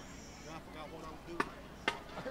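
Two sharp wooden clicks about half a second apart in the second half, a marching band drummer clicking sticks together to count the band in, over faint crowd chatter.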